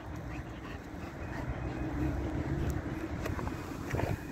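German Shepherd panting, tired out from play.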